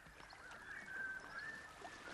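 Faint, wavering whistle-like bird call from a cartoon soundtrack.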